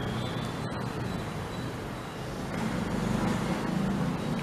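Steady low rumble of road traffic in the background, getting a little louder in the second half.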